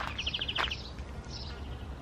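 A bird's rapid trill, a quick run of short high chirps lasting about half a second, over steady low outdoor background noise.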